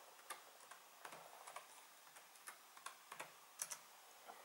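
Faint keystrokes on a computer keyboard as a login password is typed, about a dozen irregular clicks, with a louder double click near the end.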